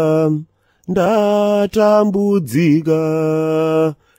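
A man's solo voice chanting in long held notes. A phrase ends about half a second in, then after a short pause a second long phrase begins, holding a steady pitch with a few small dips.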